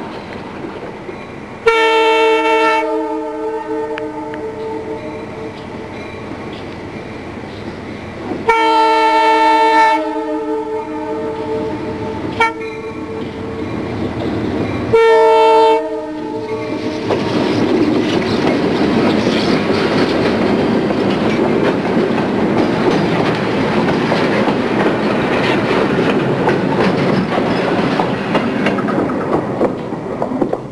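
Diesel switcher locomotive's multi-note air horn blowing the grade-crossing signal: long, long, short, long. Then the locomotive and its train roll through the crossing, a steady rumble and clatter of wheels on rail for about twelve seconds.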